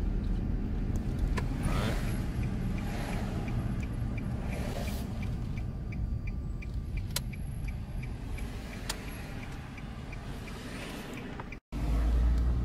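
Car cabin road and engine rumble while driving, with a turn signal ticking steadily about twice a second through most of the stretch. The sound drops out briefly near the end.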